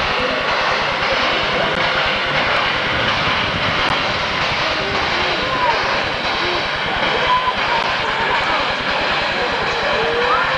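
Kettle Moraine Railway steam locomotive hissing steam in a loud, steady rush, with faint voices under it.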